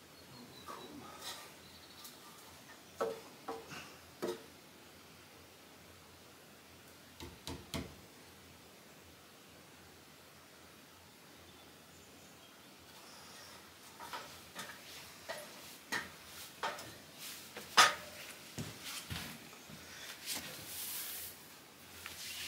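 Scattered knocks and scrapes of a new timber floor joist being shifted by hand on its stone wall bearings. The knocks come in small clusters, with the loudest a sharp knock a little before 18 s and a short scraping noise near the end.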